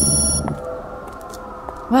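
A high electronic ringing tone over a low rumble, both cutting off suddenly about half a second in, leaving only faint held music tones until a voice starts at the very end.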